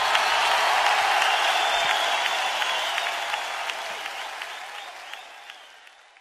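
Audience applauding, with whistles, after a live guitar song; the applause fades out steadily.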